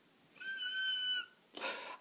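A young woman's high-pitched excited squeal: one steady held note of just under a second, followed by a quick breath.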